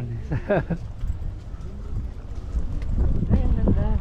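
Brief snatches of people talking over a low rumble of wind on the microphone, which grows stronger in the second half.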